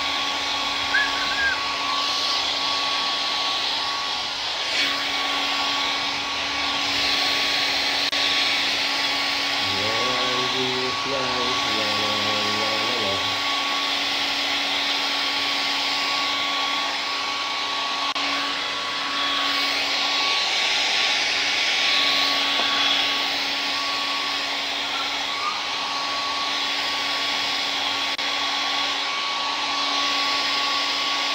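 Handheld hair dryer blowing steadily, a rush of air with a constant motor whine, swelling slightly as it is moved around the head.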